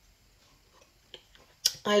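Ice cubes in a glass ticking faintly as an iced drink is sipped, with a few light clicks and a sharper one shortly before speech starts near the end.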